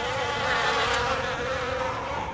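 A swarm of flying insects buzzing, a dense, steady drone.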